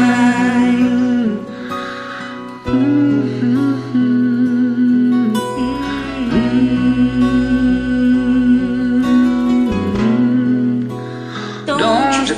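Karaoke backing track of a slow ballad with guitar, under voices holding long, wordless sung notes, with two brief lulls between phrases.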